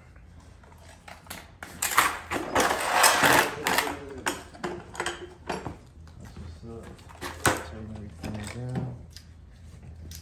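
Screws on an opened car door being tightened with a hand tool: a dense run of clicks and rattles starting about a second in and lasting a couple of seconds.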